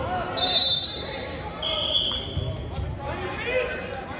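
Two short, high whistle blasts from a wrestling referee's whistle; the second is lower in pitch. Shouting voices can be heard around them.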